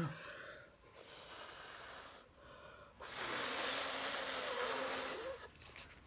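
Air being blown onto wet acrylic pour paint to push a cell out into a bloom: a shorter, softer blow, then a longer, louder one of about two and a half seconds.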